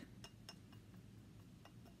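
Near silence with a few faint clinks: a wooden clothespin on the rim of a drinking glass knocking lightly against the glass as it is brushed with paint.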